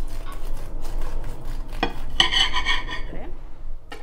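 Kitchen knife sawing through the crisp, deep-fried batter crust of a sandwich, a run of crunching clicks. About two seconds in there is a brief, harsher scrape as the steel blade rubs against the ceramic plate.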